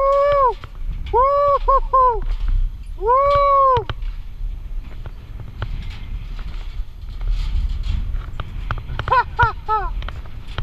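Mountain bike crossing a perforated steel-deck suspension footbridge: a rattle of short knocks over a low rumble as the tyres roll across the deck. Squealing, honk-like tones that rise and fall come in clusters in the first four seconds and again near the end: short ones in quick runs and one longer one.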